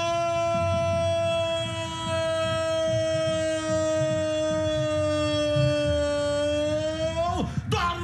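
A Brazilian radio football commentator's drawn-out goal cry, "gooool", held on one long steady note for about seven seconds. The note sags slightly toward the end, lifts, and breaks off near the end.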